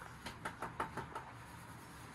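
A quick run of about six light knocks inside a horse box, over about one second, then quiet.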